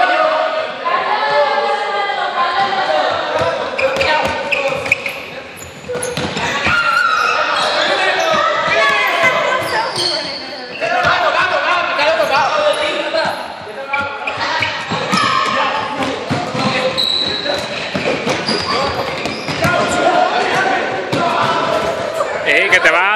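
Group of people running and dodging on a sports hall floor: a scatter of quick footfalls and thuds mixed with shouting and excited voices, echoing in the large gym.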